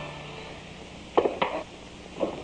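Two sharp knocks about a quarter second apart, as of a man clambering in through a window, over the faint fading tail of the film score.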